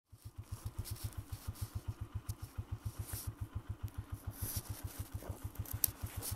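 Honda CG125 motorcycle's single-cylinder four-stroke engine running at low revs, with a steady, even beat of about seven pulses a second.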